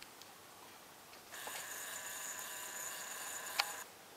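A camcorder's zoom motor whines steadily at a high pitch for about two and a half seconds, starting just over a second in. A sharp click comes shortly before it stops.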